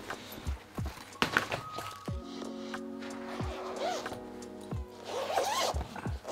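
Background music with held notes, over which a fabric guitar gig bag is handled and its zipper worked, with short rustles and knocks.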